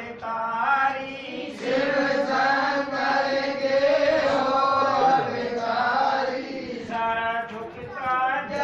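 Hindu devotional bhajan chanted by male voices in long, drawn-out sung phrases with held notes.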